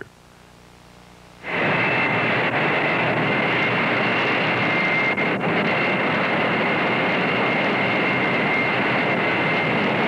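Jet aircraft engines running: a loud, steady rush with a high-pitched whine on top, starting suddenly about a second and a half in.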